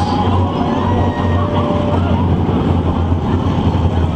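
A pack of V8 dirt-oval race cars running together at low speed in formation, a loud, steady engine rumble with no revving.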